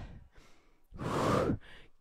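A woman's single breath close on a headset microphone, about a second in and lasting about half a second, as she breathes hard during a cardio exercise set.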